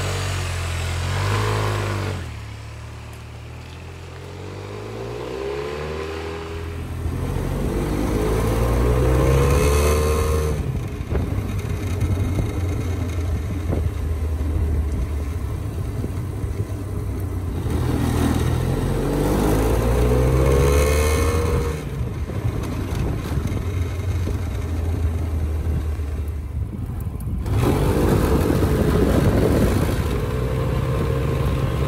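A 2003 Honda Silverwing maxi scooter's 582 cc liquid-cooled two-cylinder four-stroke engine under way, its pitch rising three times as it accelerates through the twist-and-go continuously variable transmission. Wind rushes over the microphone as it gathers speed.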